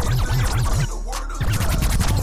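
Hip hop beat with DJ turntable scratching: a quick run of short back-and-forth scratches, a brief pause about a second in, then more scratches near the end.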